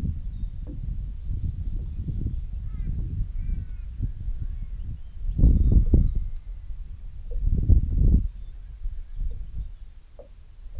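Low, gusty rumble of wind buffeting the microphone, swelling twice in the second half, with a few faint bird chirps in the background early on.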